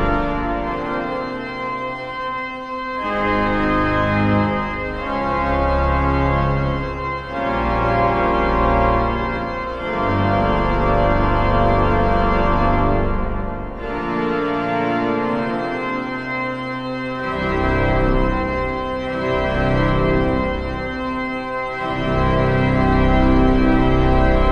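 The Wanamaker Organ, a huge pipe organ of about 28,000 pipes, playing full held chords over deep pedal bass. The chords change every second or few seconds, and the volume swells and falls.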